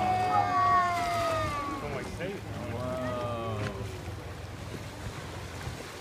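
People's voices calling out in long, falling exclamations, twice in the first four seconds, over the steady running of a boat's engine and the wash of wind and water.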